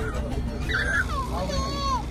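A young child's high-pitched voice calling out in long, gliding tones over background chatter, with a steady low hum underneath.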